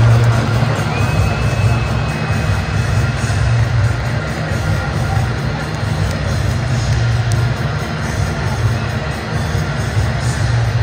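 Music over a stadium PA system mixed with the steady noise of a large crowd, loud and heavy in the bass.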